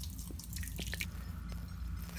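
Fermented makgeolli mash pouring through a mesh strainer bag, its liquid trickling into a stainless steel pot with many small irregular drips and splashes.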